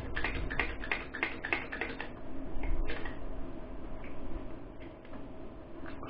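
Hand-pumped hydraulic crimping tool crimping a ferrule onto a heavy cable. It makes a quick run of clicks, about four or five a second, for the first two seconds, then a few scattered clicks.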